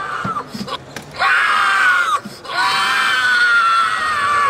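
Two long, high-pitched screams, the first about a second long and the second about two seconds, each sliding slowly down in pitch, with a short break between them.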